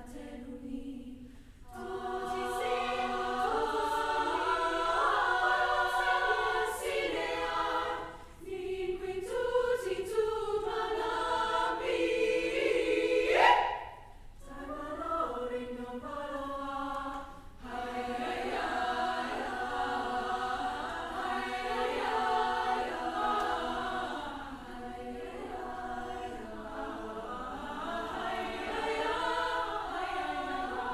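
A choir singing in phrases, with short breaks between them and a sharp upward vocal glide just before a pause about halfway through.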